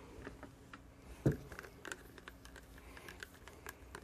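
Light clicks and handling noises as a multimeter and its test leads are picked up and moved off a workbench, with one louder knock a little over a second in.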